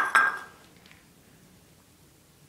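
Ceramic bowl set down on a hard floor: two quick clinks at the very start with a short ring.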